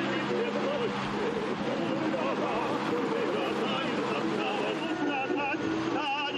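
A wartime song playing: a voice singing with a wide vibrato over musical accompaniment, with a steady low hum underneath.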